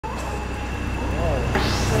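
Triple-expansion steam pumping engine running slowly at its working speed, a steady low mechanical rumble with a faint steady high tone over it. Voices murmur briefly about a second in, and a man starts talking at the very end.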